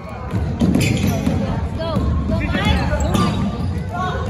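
Basketball bouncing and players running on a hardwood gym floor, a dense run of low thuds, with scattered shouts from players and spectators.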